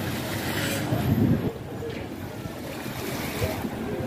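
Steady splashing rush of water from a plaza fountain's small jets, with wind buffeting the microphone.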